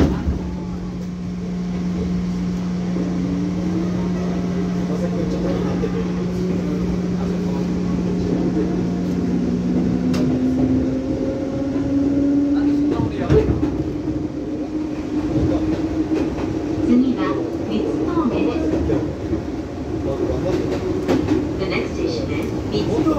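Electric train heard from inside the carriage as it gathers speed: a motor whine rising slowly in pitch, over a steady hum that cuts off about ten seconds in. Later come a few sharp clacks of the wheels over rail joints.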